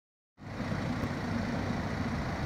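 A vehicle engine running steadily, a low hum that starts about half a second in.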